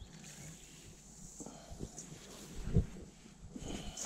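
Scoop-and-bucket handling as dry meal is scooped and tipped into a rubber bucket: a few soft knocks, the loudest near three seconds in, over a faint background.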